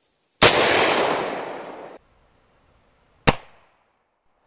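A rifle shot with a long echoing tail that stops abruptly about a second and a half later, then a second, shorter sharp shot near the end.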